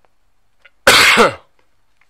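A man clearing his throat once, loudly and briefly, about a second in.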